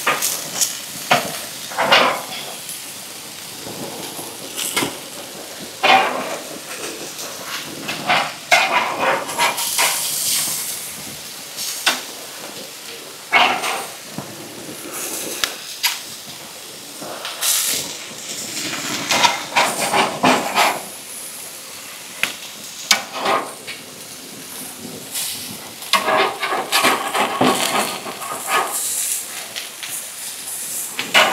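Meat sizzling on a barbecue grill with a steady hiss, broken now and then by the spatula scraping and tapping against the grill grates as the chicken and burgers are turned.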